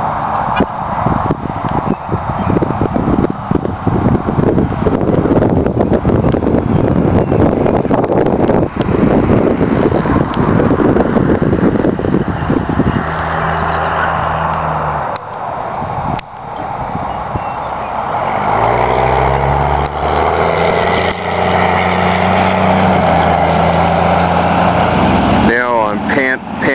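Motor vehicle noise: a rough, fluctuating rumble for about the first half, then a vehicle engine's hum. The hum breaks off once and comes back with a rise in pitch about two-thirds of the way through, then holds steady.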